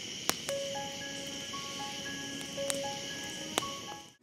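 Intro music of slow, sparse held single notes over a steady high trill like crickets at night, with a few sharp crackles from a wood campfire. It all cuts off just after the end.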